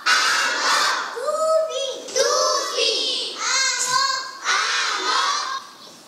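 High-pitched children's voices in a run of short, loud phrases with brief breaks, from a film's soundtrack played over a hall's speakers.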